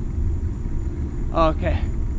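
Wind buffeting the microphone, a continuous low rumble that rises and falls in strength.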